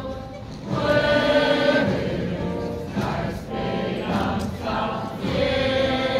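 Slow religious music sung by a choir, with held notes changing every second or so and a brief dip in loudness just after the start.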